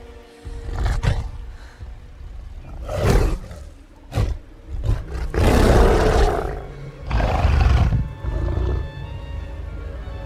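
Repeated roars of a giant gorilla in a film's sound design, several in a row with the longest and loudest a little past halfway, over orchestral film music.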